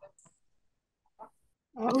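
Near silence on an online video call, with a few faint brief sounds, then a person starts speaking near the end.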